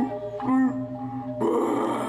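Balinese gong kebyar gamelan music with held, ringing metallophone tones. A short vocal cry with bending pitch comes about half a second in, and a sudden noisy clash enters about one and a half seconds in.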